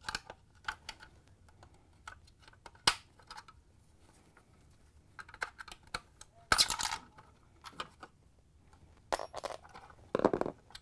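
Small metallic clicks and scrapes of a flathead screwdriver prying a steel e-clip off the ice dispenser auger shaft, with a louder clatter about six and a half seconds in and another near the end.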